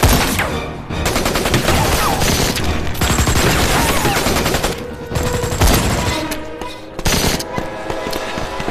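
Automatic gunfire in an exchange of fire: a long run of rapid shots from about one second in to nearly five seconds, then shorter bursts near six and seven seconds.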